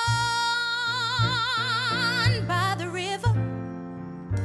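A female soloist sings a long held note with wide vibrato, then a shorter phrase, over a soft instrumental accompaniment. Low bass notes sound about once a second beneath the voice.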